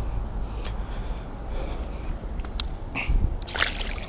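A bass being released lands in the shallow water with a short splash about three and a half seconds in, after a few faint clicks.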